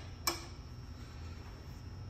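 A single sharp metallic click about a quarter second in, from hand work on the ironworker's punch station, over a low steady hum.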